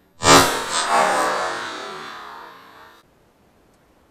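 A loud shotgun shot from a semi-automatic Armsan 612, fired at ducks flying overhead, with a long fading echo that cuts off abruptly about three seconds in.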